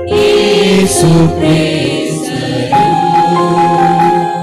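Church choir singing with instrumental accompaniment, the sung notes held and changing every half second or so, some with vibrato; liturgical music sung after the first reading, as the responsorial psalm.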